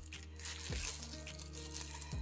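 Soft background music of held notes that step from one pitch to another, with faint rustling of a plastic bread bag being wrapped around a log of dough.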